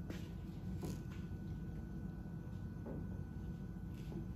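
Quiet room tone: a steady low hum with a faint click a little under a second in.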